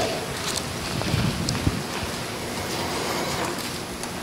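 Steady, even room noise in a church hall with soft rustling, as Bible pages are turned during a pause in the reading.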